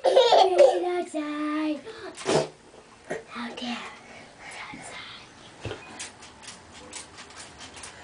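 Young children's wordless voices, pitched vocalizing with one held note in the first two seconds and a short breathy burst at about two and a half seconds, then quieter with light clicks and knocks.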